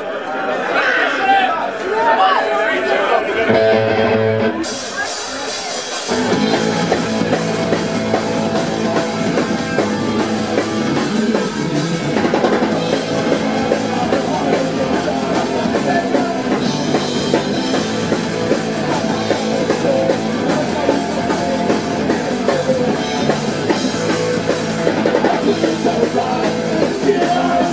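Live punk rock band playing. Electric guitar plays alone for the first few seconds, cymbals come in near five seconds, and the drum kit and full band take over from about six seconds in.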